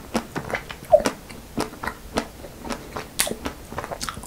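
Close-miked chewing and biting of a chocolate-coated ice cream bar: an irregular run of wet mouth clicks and smacks, the loudest about a second in.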